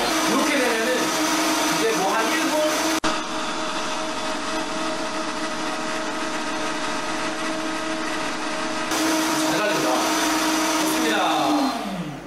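Vacuum blender's motor running at high speed, blending fruit into juice with a steady, even whine. Near the end it winds down, the pitch falling as the blades stop.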